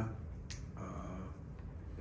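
A single short, sharp click about half a second in, followed by a man's soft, drawn-out 'uh' at the podium microphone.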